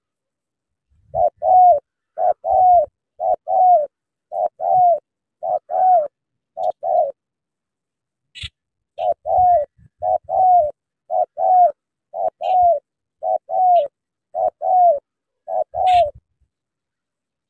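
Spotted dove cooing: a steady series of short two-note coos, about one pair a second, starting about a second in, with a pause of nearly two seconds midway.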